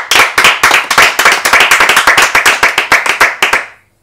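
A small group of people clapping their hands: brisk, dense applause that fades out just before the end.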